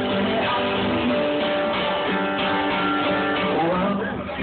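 Acoustic guitar played live and amplified, chords ringing and changing steadily.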